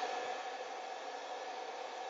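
Pet dryer blower running steadily, a constant airy hiss with a faint steady hum in it.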